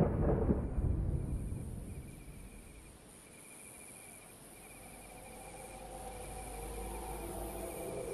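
A deep rumble from the opening theme dies away over the first couple of seconds. It leaves a quiet forest ambience of insects chirping in an even pulse about once a second over a faint high hiss. Soft sustained tones swell in toward the end.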